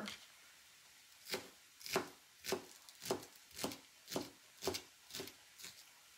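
Chef's knife chopping scallions on a cutting mat: a steady run of knife strokes, about two a second, starting a little over a second in.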